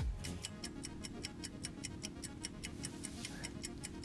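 Countdown-timer sound effect: rapid, even ticking over a low, steady musical drone.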